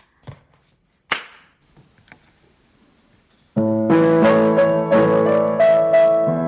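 A few faint knocks and a sharp click about a second in, then piano chords start abruptly past the middle and ring on, loud because the recording's automatic level has not yet turned down.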